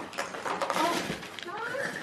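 Gift-wrapping paper crinkling and tearing as a present is unwrapped, in quick irregular crackles.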